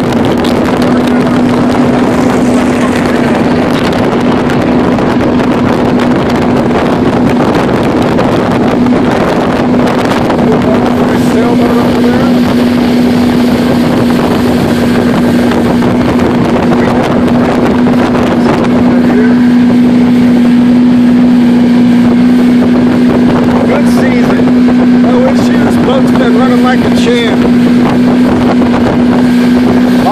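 Motorboat engine running at a steady cruising speed, a constant loud hum, with water rushing past the hull and wind on the microphone.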